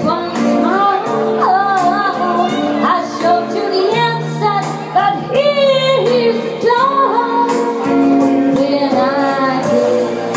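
A woman singing a slow melody into a handheld microphone, her voice bending and wavering on held notes, over a steady instrumental backing.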